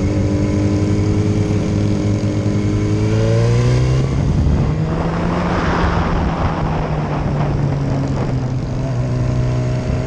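Sport motorcycle engine heard from the rider's seat, its revs climbing steadily over the first four seconds. The engine then holds a steady note under a rush of noise for a few seconds, and the revs rise again near the end.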